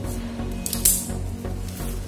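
Background music, with a short, loud crackle of plastic bubble wrap about a second in as a knife cuts into the packaging, and a fainter rustle near the end.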